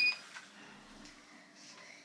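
A lift button beeping once, short and high-pitched, as it is pressed. A faint steady hum follows.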